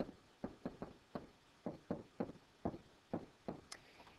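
A pen stylus tapping and stroking on a tablet screen as a word is handwritten: about a dozen short, faint knocks, roughly three a second.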